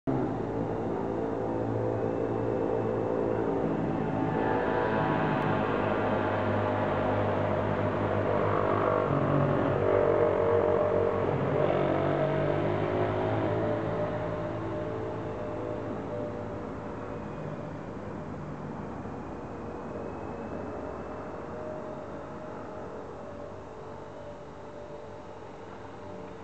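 Esky Big Lama coaxial electric RC helicopter buzzing in flight, its motor and rotor pitch bending up and down as it manoeuvres. The buzz is loudest in the first half and fades steadily over the second half.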